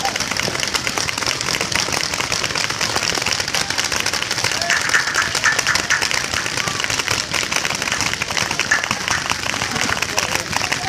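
Many paintball markers firing at once in a big game, a dense unbroken rattle of shots with no let-up.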